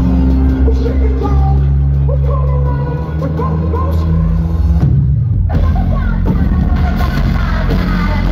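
Live band playing loud, bass-heavy rock music, with a woman singing over it in the first few seconds. About five seconds in, everything but the bass drops out for about half a second before the full band comes back.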